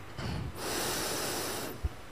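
A Quran reciter drawing a long breath in close to the microphone: a short sniff, then about a second of steady intake, with a small click near the end.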